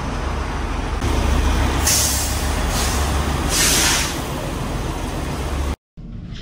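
A semi truck's diesel engine rumbles steadily at idle. Two short bursts of air hiss, typical of a truck's air brake system, come about two seconds in and again a second and a half later. The sound cuts off abruptly just before the end.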